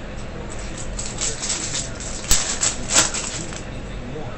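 Foil trading-card pack wrapper being crinkled and torn open, a run of crackles with two sharper snaps a little after halfway.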